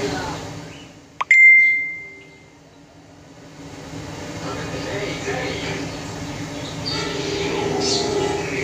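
Background voices of a crowd, broken by a sharp click and a single loud, high-pitched beep that fades away over about a second, after which the voices build up again.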